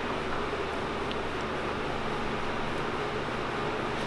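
Steady, even background hiss with a low hum, typical of a shop's ventilation or air-handling fan running; nothing changes through it.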